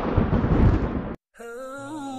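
Thunderstorm sound effect: a loud rumble of thunder with rain, which cuts off abruptly a little over a second in. Soft background music with held, slightly wavering notes then starts.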